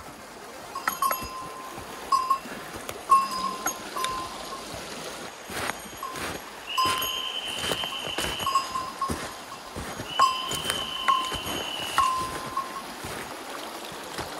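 Two long, steady, high censor beeps, each about two seconds, over running creek water. Short ringing pings of a small bell sound at irregular intervals throughout, each with a sharp click.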